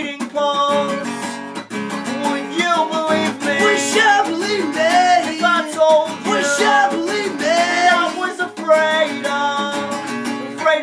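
Acoustic guitar strummed in a steady rhythm under male voices singing long, held melody notes, with a second voice joining partway through.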